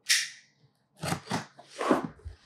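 A knife slicing through packing tape on a cardboard box: one short cut at the start, then three quick cuts in the second half.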